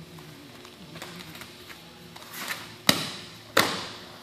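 Bodies hitting a training mat as a grappling partner is dragged down onto his hands and knees: a brief scuffle, then two sharp slaps about three seconds in, just over half a second apart.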